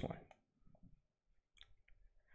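Faint computer mouse clicks, two of them close together near the end, after the close of a spoken word; otherwise near silence.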